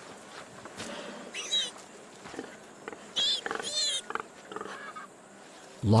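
A few short, high squealing calls from animals, about one and a half, three and three and a half seconds in, over faint rustling background.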